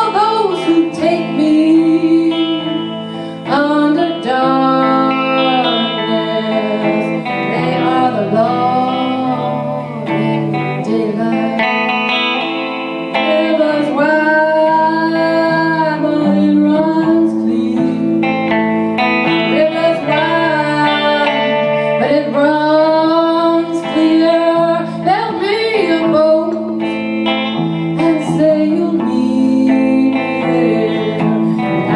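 Two guitars playing a slow song live: an acoustic guitar laid flat on the lap and played with a slide, its notes gliding up and down, over a hollow-body electric guitar accompaniment.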